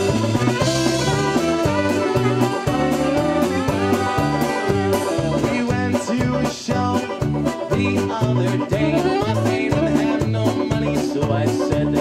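A live Cleveland-style polka band of accordion, saxophone, banjo and drum kit playing an instrumental passage with a steady, bouncing beat.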